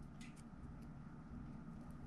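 Quiet room tone with a few faint short ticks.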